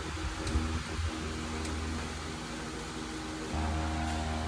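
Steady low background hum with a few faint ticks; the hum grows louder near the end.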